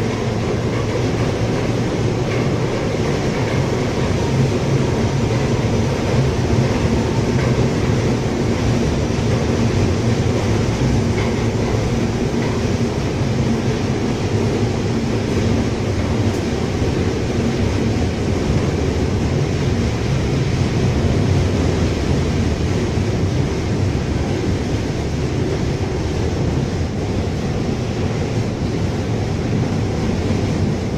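Steady running noise of a Rusich (81-740/741) articulated metro train, heard from inside the passenger car as it travels between stations: an even rumble of wheels and running gear on the track.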